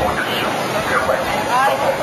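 Indistinct voices of boat passengers talking and exclaiming over the steady rushing noise of the Horseshoe Falls at close range, with spray and wind.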